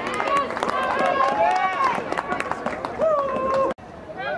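Several people shouting over one another at a lacrosse game, with sharp clicks scattered among the voices and one drawn-out yell near the end. The sound cuts out abruptly just before the end.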